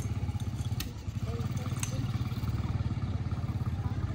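A small engine running steadily at idle, a low rumble with a fast, even pulse. Two sharp clicks about a second apart near the start, and faint voices.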